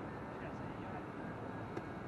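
Steady outdoor wind noise on the microphone with faint distant voices.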